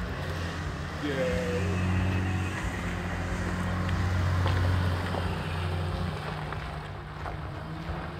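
Engine of a three-wheeled stretch tricycle car running as it pulls away, swelling about a second in and fading after about six seconds as it recedes.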